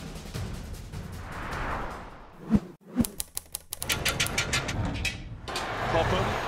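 Edited transition sound effects over a music bed: a swell builds, then two sharp hits about half a second apart, followed by a rapid run of clicks lasting about a second. A steady crowd hubbub from the archive match footage comes in over the last couple of seconds.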